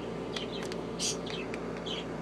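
A few short, high chirp-like squeaks and light clicks from a young toco toucan, over a steady low hum.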